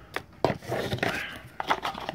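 A small paperboard box being handled: a sharp tap about half a second in, then rustling and scraping of card, with a few light clicks near the end.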